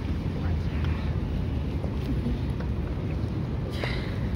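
Wind buffeting the phone's microphone: a steady low rumble, with one short sharp sound near the end.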